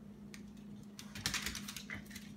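Boston terriers' claws clicking and scrabbling on a hardwood floor as they play-wrestle: a few scattered clicks, then a quick flurry about halfway through.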